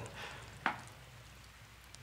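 A pause in speech: a faint steady hiss and low hum of room tone, with one short click a little over half a second in.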